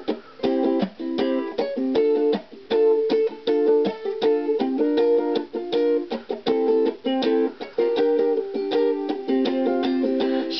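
Solo ukulele strummed in a reggae style: short, choppy chords in a steady rhythm, with chord changes every second or so.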